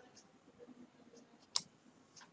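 Near quiet room tone with a few faint ticks, then one sharp click of the computer's input device about one and a half seconds in as the typed web address is entered.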